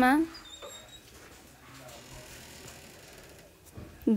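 A stylus faintly tapping and scratching on a tablet's glass screen as a number is written, over quiet room tone. The tail of a spoken word is heard at the very start.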